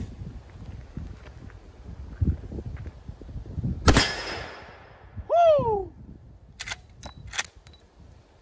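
Henry .45-70 lever-action rifle firing a single shot about four seconds in, a sharp report with a trailing echo. A few sharp metallic clicks follow near the end as the lever is cycled.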